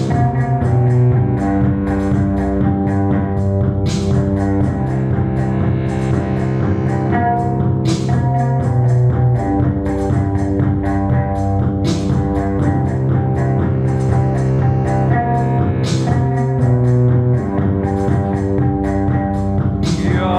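Post-punk trio playing an instrumental passage on drum machine, bass guitar and keyboard: the drum machine keeps steady ticking with a crash about every four seconds over a repeating bass line and held keyboard notes.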